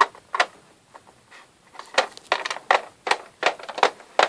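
Plastic Littlest Pet Shop toy figure being walked across a plastic playset floor by hand: a quick, irregular run of light taps, about a dozen in a few seconds.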